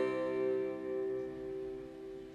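A final chord on a plucked string instrument ringing out and slowly fading away.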